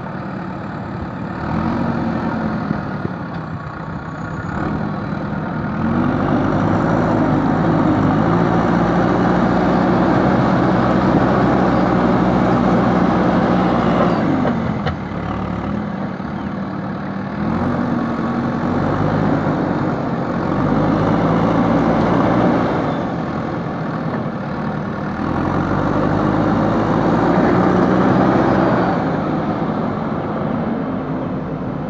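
JCB backhoe loader's diesel engine running under load, revving up and easing back several times as the front loader bucket pushes and lifts soil.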